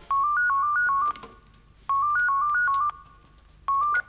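An electronic telephone ringtone: a short melody of high alternating beeps, each about a second long, rings twice with short pauses between, and a third ring starts near the end.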